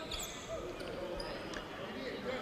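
Faint ambience of an indoor basketball gym during a stoppage in play: a low murmur of the crowd and distant court noise.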